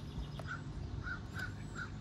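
A bird calling, about five short calls in quick succession, over a steady low background hum.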